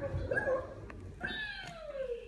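A small child's wordless high-pitched vocal sounds: a short babble, then one long call falling in pitch.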